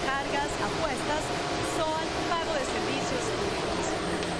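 Steady rush of air from the blowers of lottery ball machines, with light balls rattling about inside the clear acrylic chambers. A voice is heard over the noise.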